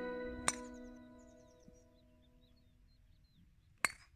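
Background music ending on a held chord that fades out over the first second and a half. About half a second in, a single sharp click of a golf club striking the ball off the tee. Faint high chirps follow, and another sharp click comes near the end.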